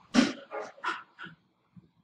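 A dog barking four short times in the first second and a half, the first bark the loudest.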